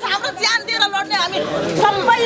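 Raised voices of women shouting, with several people speaking over one another.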